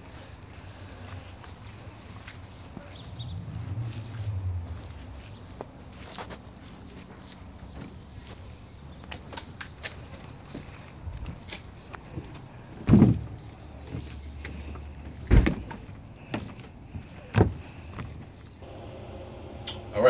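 Wooden knocks and clunks as a Douglas fir board is handled and set onto a boat's keelson, with three loud knocks about two seconds apart in the second half and smaller clicks between. A brief low rumble comes a few seconds in.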